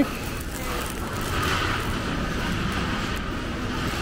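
Steady background noise of a shop interior: an even hiss with a low hum and nothing standing out, louder from about a second in.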